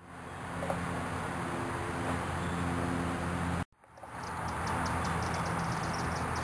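Steady outdoor background hiss with a low, even hum, fading in at the start and cutting out briefly a little past halfway where the recording breaks. From about four seconds in comes a quick run of faint, high ticks.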